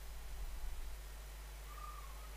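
Quiet room tone: a faint, steady low hum under light hiss, with a brief faint tone near the end.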